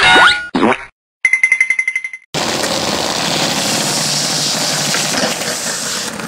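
Cartoon boing sound effects with sliding pitch, a brief silence, then a fast-pulsing ringing tone for about a second. A little over two seconds in it cuts suddenly to the steady rushing noise of skateboard wheels rolling on concrete.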